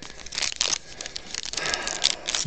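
Foil wrapper of a trading-card pack crinkling and tearing as it is pulled open by hand, an irregular run of crackles that is loudest in the first half-second.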